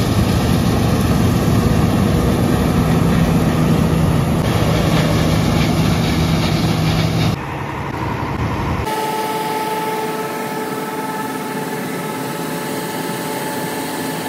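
John Deere 9870 STS combine running while harvesting soybeans, a loud, dense, steady machinery noise. About seven seconds in it cuts to a quieter, steady machine hum with a thin whine on top, as the combine runs beside a John Deere 8R tractor and grain cart.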